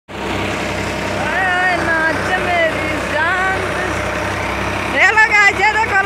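Tractor-driven paddy thresher running steadily while threshing wet paddy, its engine and drum making a continuous hum. People's voices call out over it a few times, loudest about five seconds in.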